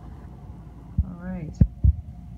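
Low thumps of the handheld recording phone being moved, three in the second half over a low rumble of handling noise, with a short vocal sound between the first two.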